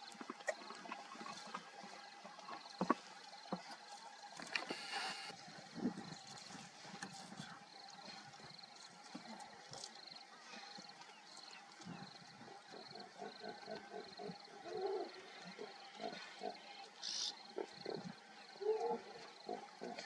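Outdoor wildlife sound with no voice: scattered small clicks and rustles over a faint steady hum. A short hiss comes about five seconds in, and from the middle onward there is an irregular run of short low pulses.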